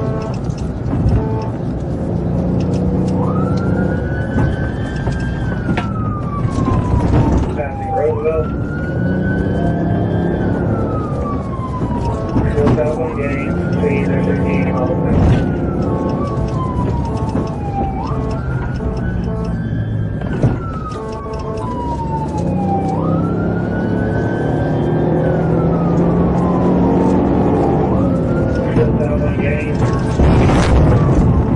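Police car siren on wail, each cycle rising quickly and then falling slowly, repeating about every four to five seconds from a few seconds in. Under it is the steady engine and road noise of the pursuing car.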